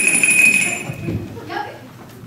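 A bell rings with one steady, high tone that fades out about a second in, a school bell marking the end of class. Voices follow.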